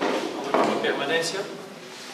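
A man speaking, with a sharp knock, like a book being handled on the desk, about half a second in.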